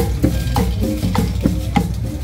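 Marching band drum line playing a quick, steady beat on bass drums and snare drums, with cymbal.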